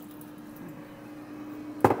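A steady, even electrical hum from a running kitchen appliance, with one sharp knock near the end.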